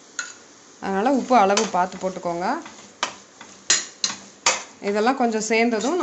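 A slotted steel ladle stirring masala in an aluminium pressure cooker, with sharp clinks and scrapes of metal on metal, several of them in the second half.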